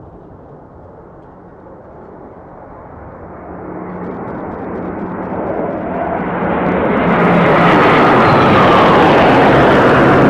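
A formation of four Eurofighter Typhoon fighter jets flying past. The jet noise builds steadily for several seconds and is loud and steady in the second half as they pass overhead.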